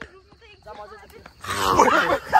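Faint voices, then about a second and a half in a man's loud shout or growl breaks out and continues.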